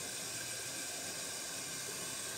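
Steady hiss from a covered pan cooking on a gas burner turned down to a low flame.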